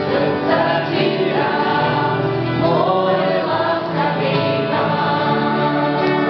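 A small mixed-voice gospel group of women and men singing together, accompanied by strummed acoustic guitars.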